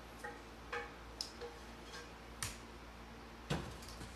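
A handful of faint, separate clicks and light knocks from handling things at an electric stovetop and its cookware, spaced irregularly, the loudest near the end.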